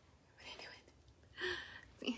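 Faint whispered voice in two short, soft snatches, one about half a second in and another near the end.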